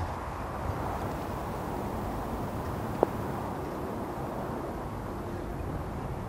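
Steady low outdoor background noise with one short knock about halfway through.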